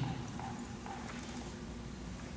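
Quiet room tone in a pause between spoken sentences: a faint steady low hum with light background hiss and no distinct sound.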